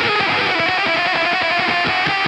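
Electric guitar played through a Screwed Circuitz Irvine's Fuzz pedal with delay and reverb: a fast run of picked fuzz notes over a held note.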